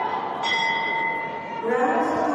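A boxing ring bell struck once about half a second in, ringing and dying away over about a second. Arena voices rise near the end.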